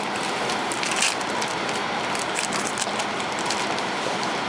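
Steady room hiss, with a few faint crackles and clicks from foil booster packs and trading cards being handled.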